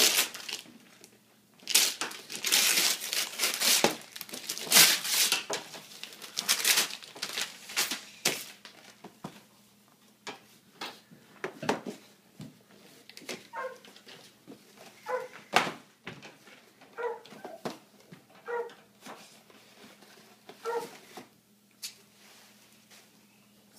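Christmas wrapping paper being torn off a gift box and crumpled, loud for the first eight or nine seconds, then quieter rustling of tissue paper as the box is opened. In the second half, several short high-pitched whines.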